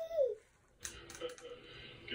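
A baby's brief babbling call, its pitch rising and then falling, followed by a short pause and a few soft clicks.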